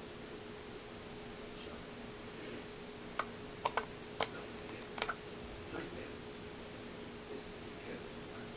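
Faint steady electrical hum with a handful of light, sharp clicks about three to five seconds in.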